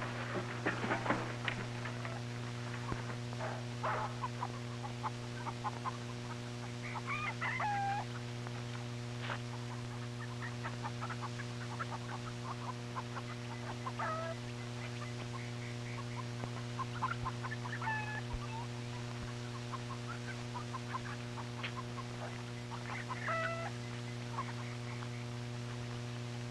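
Chickens clucking now and then, short calls that glide in pitch, over a steady low hum, with a few knocks in the first couple of seconds.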